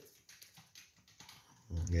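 Mostly quiet, with a few faint light clicks as a sage cutting is handled and lifted out of a small glass of water. Near the end a man says "yeah".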